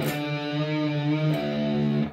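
Electric guitar: an octave struck on the A and G strings at the 5th and 7th frets, the D string muted, ringing, with the pitch bent up about 1.3 seconds in.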